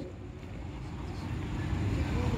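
Low rumble of road traffic from the adjacent street, a vehicle passing and growing steadily louder.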